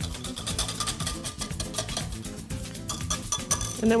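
Wire whisk beating seasoning into broth in a glass measuring cup, a rapid run of clinks as the wires strike the glass.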